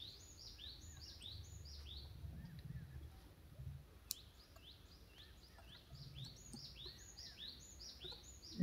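Faint bird calling in the background: a short falling chirp repeated about three times a second, in two runs, one at the start and one from about six seconds in. A single sharp click comes about four seconds in.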